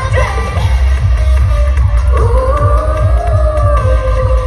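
Live K-pop girl-group performance over the concert PA, captured on a phone in the audience, with a heavy, even bass beat. About two seconds in, a melody line rises and is held to the end.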